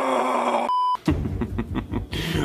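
A man's angry scream from a distance, held for about the first two-thirds of a second. It is cut off by a short electronic beep, and low pulsing sounds follow.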